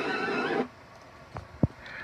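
Several voices screaming, heard as playback through a computer's speakers, cut off abruptly about half a second in, followed by a couple of faint clicks.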